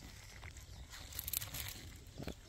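Faint rustling handling noise from gloved hands moving a copper line and its insulation, with a brief crinkly rustle a little past the middle.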